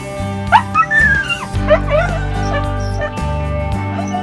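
Brittany spaniel giving a few sharp yips and a longer whine in the first two seconds or so, over steady background music that carries on alone afterwards.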